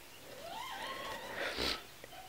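A small child's faint, wavering vocal sound, rising and falling briefly. Near the end comes the soft sound of a stiff board-book page being turned.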